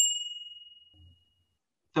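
A single bright bell-like ding sound effect, struck once and ringing out, fading away over about a second and a half.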